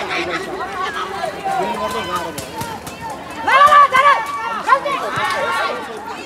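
Several voices calling and shouting during a wheelchair basketball game, loudest in a burst of high shouts about three and a half seconds in, with a few short knocks.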